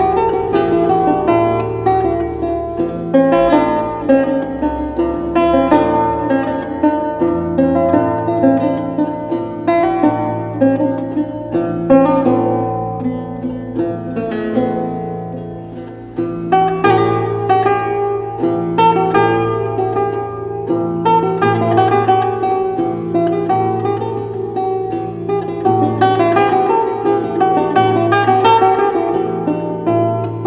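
Many-course lute playing a repeating plucked bass ostinato beneath a melodic motif of single notes and chords. About halfway through the upper line thins and the playing quietens briefly, then returns at full strength.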